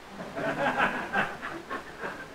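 Soft, broken laughter lasting about a second and a half, much quieter than the speech just before.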